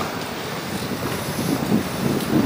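City street background noise: a steady rush of distant traffic, with wind rumbling on the camera microphone.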